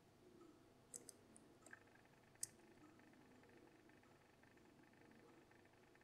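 Faint metallic clicks of a steel lock pick working the spring-loaded wafers of a Miwa DS wafer lock under tension: a few light ticks in the first half, the sharpest about two and a half seconds in.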